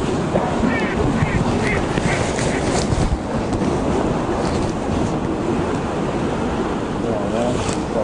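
Steady wind noise buffeting the microphone, with a short run of duck quacks about one to three seconds in.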